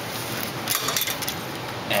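Brief light handling noises about two-thirds of a second in, from hands working at the loosened plastic air box cover of a 1998 Jeep Grand Cherokee, over a steady background hiss.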